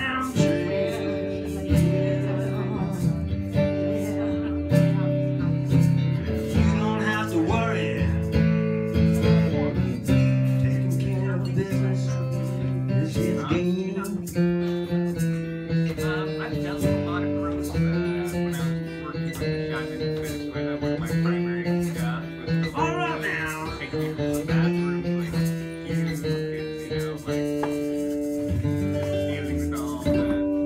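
Live acoustic blues: an acoustic guitar strummed steadily in chords, with a voice singing long held notes that waver in pitch at a few points.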